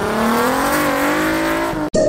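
Car engine accelerating hard, its pitch rising steadily, then cut off abruptly just before the end, followed by a brief burst of sound.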